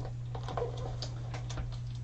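A few light, scattered clicks and taps of clear plastic stamp-set and die-set packaging being handled on a desk, over a steady low hum.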